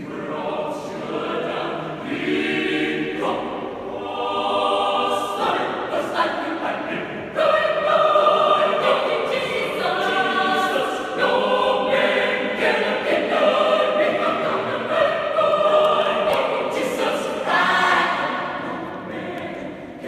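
Youth choir of women's and men's voices singing together, the phrases getting louder from about seven seconds in.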